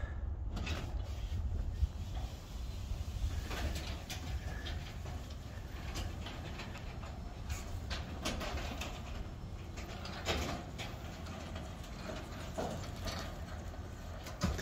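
Legacy 850 belt-drive garage door opener running as it raises a Northwest Door 502 sectional garage door. A steady low hum with scattered light clicks.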